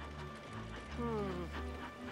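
Film score with low sustained notes under the light rhythmic clatter of a small steam tank engine rolling in along the track. About halfway through, a tone slides downward in pitch.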